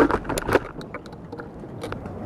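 Camera handling noise: a few sharp knocks and scrapes in the first half-second and another near the end, over quieter rustling as the camera is swung around.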